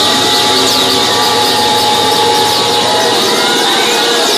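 Loud electronic dance music over a club sound system, dense and sustained, with a steady high tone and a few quick descending glides, under crowd noise.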